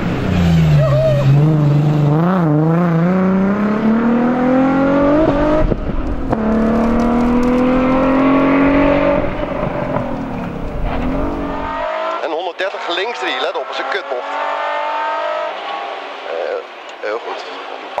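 Nissan 350Z rally car's V6 engine: its pitch drops as it slows for a turn, then rises through the gears with a shift about six seconds in, and falls away as the car backs off. After a cut about twelve seconds in, the engine is heard from inside the cabin.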